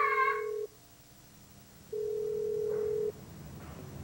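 A telephone line tone at one steady pitch, sounding in spells of about a second with pauses of about the same length. The tail of a shrill cry fades out at the very start.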